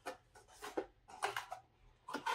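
A few short plastic clicks and rubs as a small plastic scale model and its clear plastic box are handled and fitted back together.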